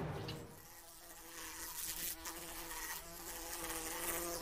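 A flying insect buzzing in a steady drone that grows louder about a second in.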